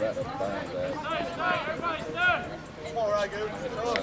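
Raised voices of softball players calling out across the field, strongest in the middle of the stretch, with a single sharp knock right at the end.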